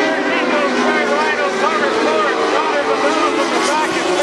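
Dwarf race cars' motorcycle-derived engines running on a dirt oval, their pitch rising and falling as they rev, with an indistinct voice mixed in.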